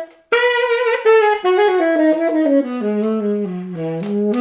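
Tenor saxophone played unaccompanied: after a brief pause, a phrase of notes stepping steadily downward, ending on a longer held low note.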